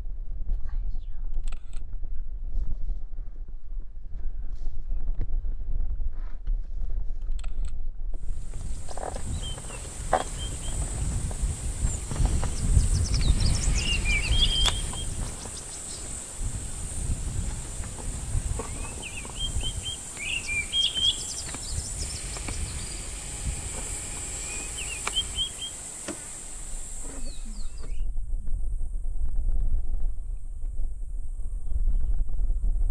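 Outdoor bush sound with a low rumble at first. About eight seconds in, a steady high-pitched drone joins it, with scattered bird chirps and twitters. The drone stops near the end.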